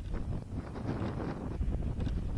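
Wind buffeting the microphone: a steady, unpitched low rumble with irregular gusty flutter.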